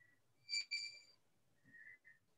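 Two short, steady, high-pitched tones in quick succession, the second longer than the first, followed near the end by a fainter, lower tone.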